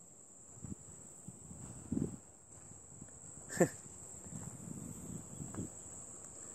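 Faint, steady high-pitched insect chirring from the grassland, with soft low rustles. A little past midway comes one quick call that drops sharply in pitch.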